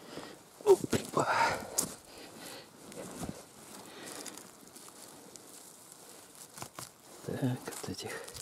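Footsteps and rustling through dry pine needles and fallen leaves on the forest floor, with a few sharp handling clicks.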